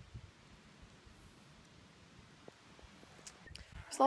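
Near silence: a faint low rumble, with a few soft clicks near the end.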